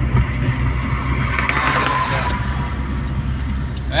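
Steady low rumble of a car's engine and tyres heard from inside the cabin at highway speed, with a swell of hiss around the middle.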